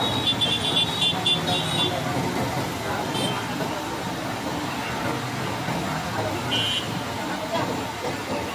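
Busy roadside street noise: traffic and background voices, with a quick run of short high-pitched beeps in the first two seconds and another brief burst near the end.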